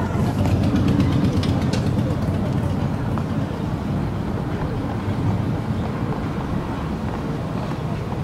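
Car cabin noise while driving: a steady low rumble of engine and tyres on the road, heard from inside the moving car.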